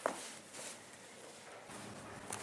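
Faint footsteps of a person walking on a paved street. At the very start there is a short, sharp sound that slides down in pitch, and a soft knock follows about half a second later.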